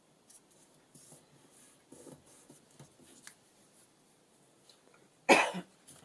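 Faint paper handling as book-page scraps are pressed down and a glue stick is used, then a single short, loud cough about five seconds in.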